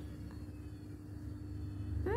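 Steady low background hum with a thin, constant tone over it; no other sound stands out.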